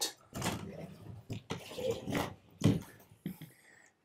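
Handling noise from a steel periscopic rifle mount: a series of sharp metal clicks and knocks as its latched, hinged cover is opened and the rifle is lifted out of the cradle. The loudest knock comes about two and a half seconds in.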